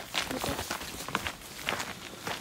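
Footsteps of several people walking on a forest dirt path littered with dry leaves, a run of uneven steps.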